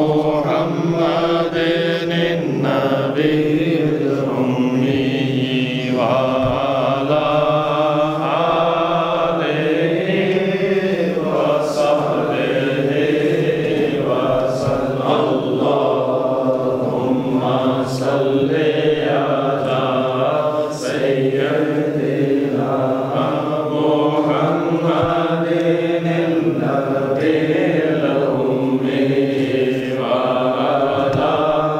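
Men's voices chanting together in a continuous devotional chant, salawat (blessings on the Prophet) recited as a group.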